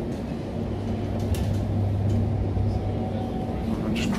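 Cabin noise of an electric passenger train running along the track: a steady low hum that swells in the middle and fades again, with a steady tone just above it and a single short click about a second and a half in.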